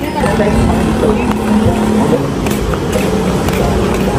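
City street traffic: a vehicle engine hums steadily for about the first two seconds over a constant background of traffic noise and distant voices.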